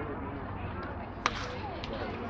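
A single sharp crack a little over a second in: a baseball struck by a bat.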